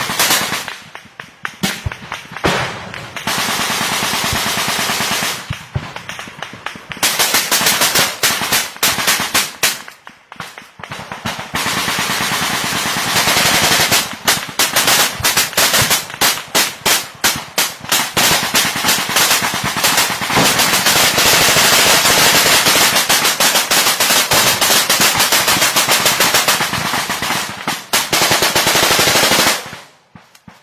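Loud automatic rifle fire in a jungle firefight: rapid overlapping shots in long bursts, with a few short lulls in the first half, then almost unbroken fire from about thirteen seconds in until it stops near the end.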